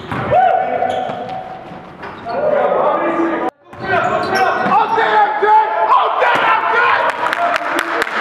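Basketball bouncing on a gym floor during play, mixed with players' voices, in a hall's echo. The sound cuts out abruptly about three and a half seconds in, then the game sound resumes.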